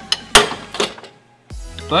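A tight exhaust up-pipe nut on the turbo breaking loose under a long ratchet: one sharp, loud crack about a third of a second in, with a few lighter metal clicks around it.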